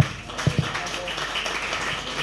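Audience applauding: steady clapping from many hands.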